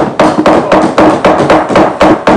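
Rapid, loud knocking of hands on wooden parliamentary desks, several strikes a second: members desk-thumping to show approval of the point just made.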